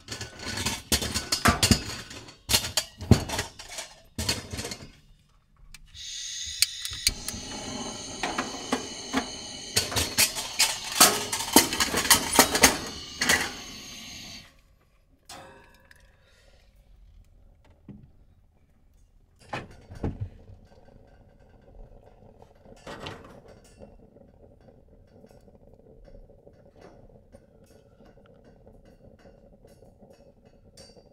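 An Aladdin kerosene heater being handled and lit. First comes a run of sharp clicks and knocks, then about eight seconds of steady hiss with rapid clicking. After that it goes quiet, with a few faint ticks and a low hum while the burner is alight.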